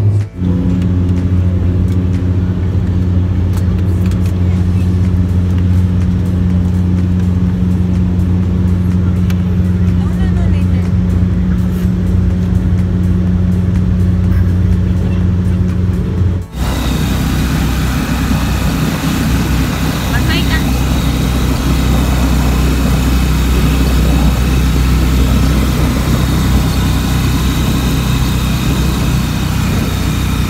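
Steady drone of airliner engines heard inside the cabin, a low even hum. About halfway it cuts abruptly to a noisier, harsher engine-and-road rumble of a ground vehicle ride.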